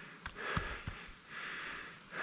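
A climber's faint breathing: two soft breaths, the second one longer, with a light click about a quarter second in.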